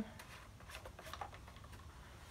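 Faint light clicks and rubbing from an engine oil dipstick being screwed down into its filler tube and turned back out to read the level.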